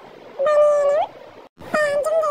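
A high-pitched, drawn-out vocal call, held on one pitch and rising at the end, about half a second in. A second call begins near the end.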